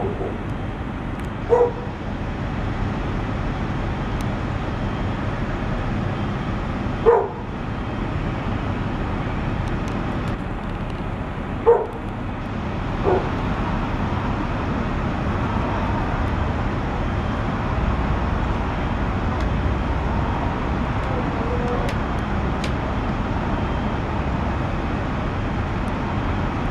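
A dog barking in single barks every few seconds, about five in all, over a steady background noise.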